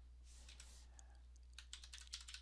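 Faint keystrokes on a computer keyboard: a few scattered taps, then a quick run of taps in the last half second, over a low steady hum.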